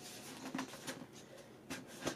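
A few faint scratches and taps of hands on a paper-covered cardboard canister as its snug lid is worked loose.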